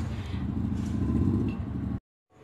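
Steady low rumbling background noise with no clear rhythm or pitch, ending abruptly at a cut.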